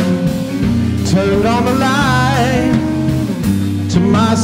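Live band of electric guitar, electric bass and drums playing a funky blues-rock groove, with a melody line that bends and glides in pitch over sustained bass notes.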